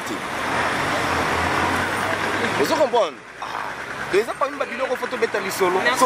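A road vehicle driving past close by, a steady rush of engine and tyre noise with a low rumble that dies away about three seconds in. Speech follows.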